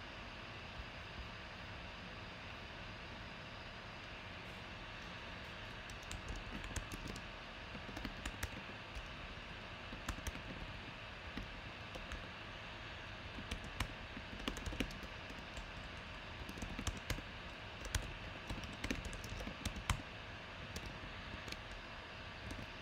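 Typing on a computer keyboard: irregular runs of keystroke clicks starting about six seconds in, over a steady background hiss.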